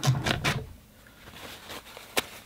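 Paper towels being pulled and handled: a short burst of rustling, scraping paper noise in the first half second, then faint handling sounds.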